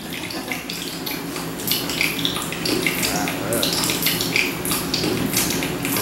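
Water running and splashing, with irregular crackles and gurgles over a steady rushing hiss.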